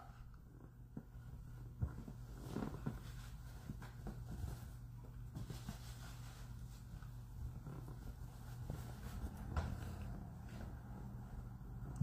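Faint rustling and rubbing of a cloth towel wiped over the face close to the microphone, with a few light clicks from handling, over a low steady hum.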